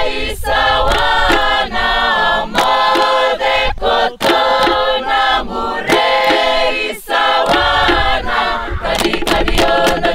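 A chorus of many voices singing a traditional Fijian chant together, with sharp percussive strikes at intervals. Near the end the singing gives way to a fast, even pulse.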